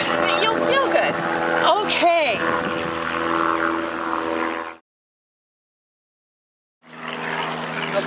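A steady motor-like hum made of several even tones, with a person's voice giving a few brief rising-and-falling vocal sounds in the first two and a half seconds. Near five seconds in, the sound cuts out to dead silence for about two seconds, then the hum returns.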